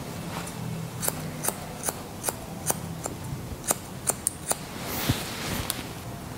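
Barber's hair-cutting scissors snipping hair, a run of about a dozen crisp snips at two to three a second, followed by a brief rustle near the end.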